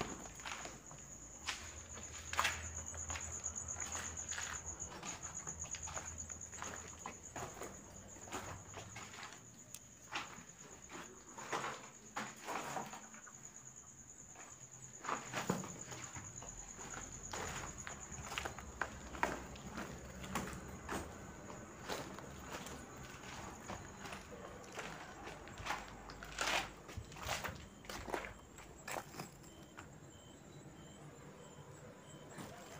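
Footsteps on a debris-strewn floor, with irregular scattered knocks, over a steady high-pitched tone.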